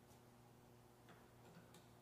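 Near silence: room tone with a low steady hum and a few faint clicks in the second half.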